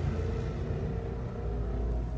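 A steady low rumble with a faint hum over it, like distant traffic or an idling engine.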